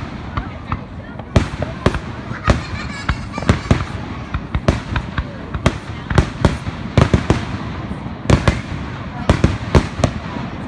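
Fireworks display: aerial shells bursting in a rapid, irregular string of sharp bangs, about two or three a second.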